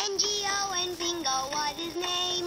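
LeapFrog My Pal Violet plush toy playing a children's song through its built-in speaker: a child-like singing voice over a musical backing, the melody moving through short notes several times a second.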